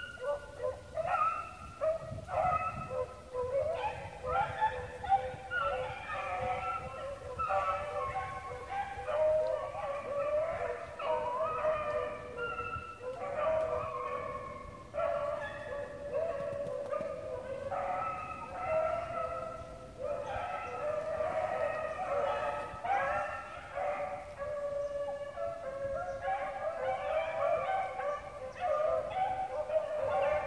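A pack of rabbit-hunting hounds baying and howling without a break, many overlapping voices, as the dogs run a rabbit's trail.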